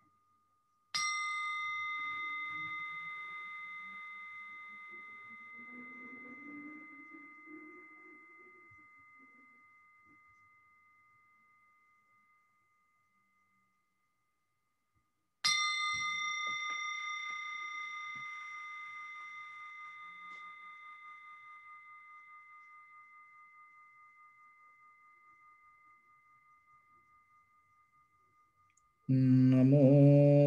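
A meditation bell struck twice, about fourteen seconds apart; each strike rings a clear tone that fades slowly over ten seconds or more, the second one wavering as it dies away. A man's chanting begins just before the end.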